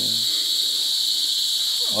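Steady, high-pitched chorus of night insects.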